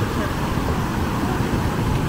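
Steady rushing roar of the Lower Düden waterfall falling into the sea, with tourists chatting faintly over it.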